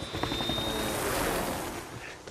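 Helicopter engine and rotor noise with a rush of noise that swells and peaks about a second in, and a thin high whine that fades out about halfway through.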